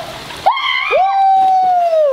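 A woman's long yell that starts about half a second in, holds one high note and falls away near the end, as she jumps into a swimming pool, with the splash of water beneath it.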